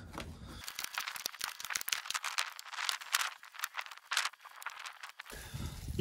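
Rapid crackling and rustling of hands working tomato seedlings into potting compost in thin plastic pot trays. Many small crackles, mostly high in pitch, start about half a second in and stop shortly before the end.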